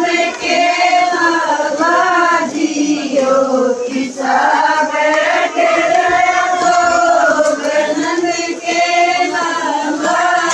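A group of women singing a Haryanvi devotional bhajan together, with drawn-out, gliding notes.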